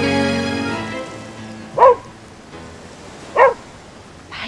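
Background music fades out, then a dog barks twice, about a second and a half apart.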